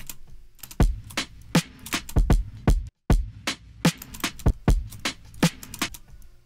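Drum loop playing back: a sampled drum break layered with programmed kick and snare hits, with a shorter secondary kick doubling some of the closely spaced kicks. The playback cuts out for an instant about halfway and starts again.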